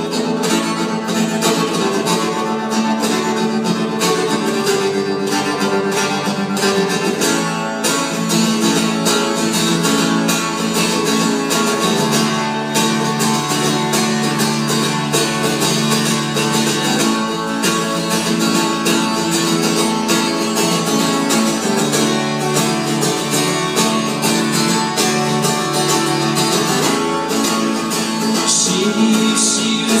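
Acoustic guitar strummed steadily through the stage sound system, the chords changing every few seconds, in an instrumental passage of a live song.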